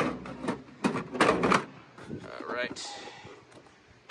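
Knocks and clatter of a hard tool case being handled and lifted into a steel tool cabinet: several sharp hits in the first second and a half, then a short mutter.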